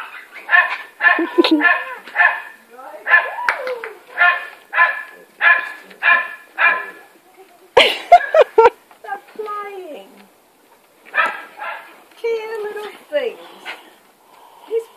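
A labrador barking in a quick, even run of about a dozen barks, then a few sharp clicks about eight seconds in and two more barks later.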